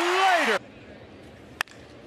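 Stadium crowd cheering under a commentator's voice, cut off abruptly about half a second in. Then quiet ballpark ambience and a single sharp crack of a bat hitting a pitch near the end.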